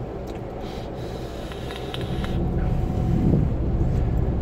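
Car cabin road and engine noise, a steady low rumble that grows louder about halfway through as the car picks up speed.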